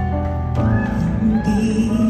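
Live band accompaniment to a slow song: sustained keyboard chords over a steady bass between a singer's lines, with a few short sliding notes in the middle.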